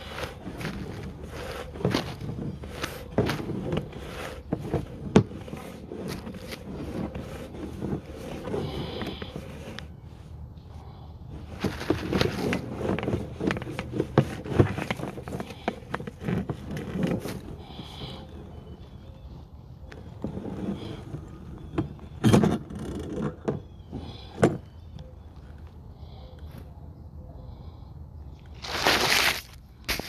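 Sewer inspection camera's push cable being pulled back out through a cleanout, with irregular scraping, rubbing and clicking, and a louder scraping rush about a second long near the end.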